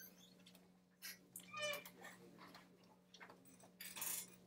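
Near silence: room tone with a steady low hum, a few faint clicks and a brief faint squeak.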